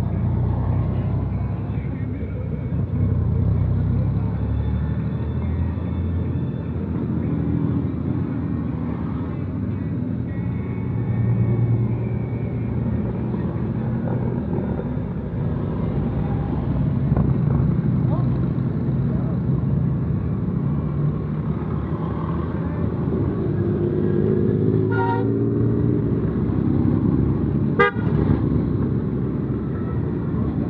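A procession of motorcycles, Honda Valkyrie flat-six cruisers and V-twin cruisers, rides past at low speed one after another, the engines swelling and fading as each bike goes by. A horn toots twice near the end.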